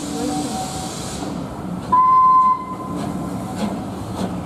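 Passenger coaches of a departing steam-hauled train rolling past close by, with a hiss at first. About two seconds in, a loud, steady high-pitched tone rings out for under a second.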